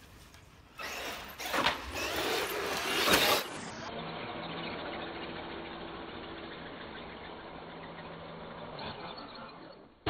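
Traxxas X-Maxx 8S electric RC monster truck accelerating hard, a loud burst of motor and tyre noise lasting a couple of seconds, then a steadier, quieter hum with a faint held tone while the truck is airborne off a jump.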